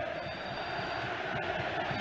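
Steady noise of a large stadium crowd at a football match, heard through the TV broadcast sound.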